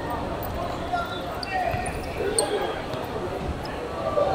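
A football being kicked and bouncing on a hard outdoor court during a run at goal and a shot: sharp knocks about a second in and about two and a half seconds in, with players calling out between them.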